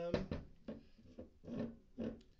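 Aluminium energy drink can knocking and bumping against a wooden tabletop as it is handled and turned, about five short knocks spread through the two seconds.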